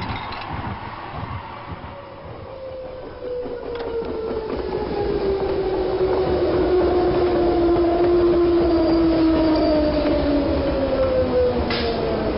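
Electric light-rail train pulling into the station. Its running noise grows louder from about four seconds in, and the motor whine falls slowly in pitch as the train slows.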